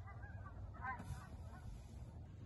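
A few faint, short honking calls in two quick bunches about half a second apart, over a steady low outdoor rumble.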